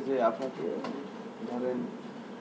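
Indistinct talking in a classroom: short stretches of voices that the speech recogniser did not pick up as words.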